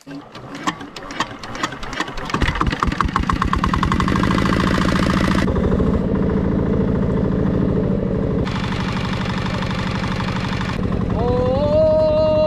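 A small boat's engine starting up about two seconds in and then running steadily with a fast, even knocking beat.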